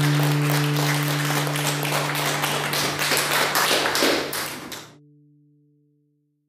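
A crowd of people clapping steadily over a held low chord of music. It all fades out about five seconds in.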